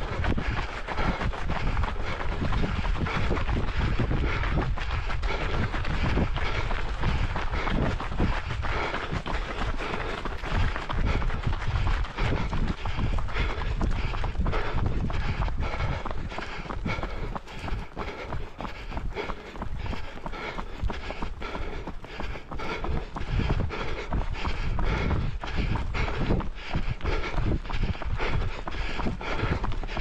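A runner's footsteps pounding along a path at a steady running pace, about three footfalls a second, over a steady low rumble.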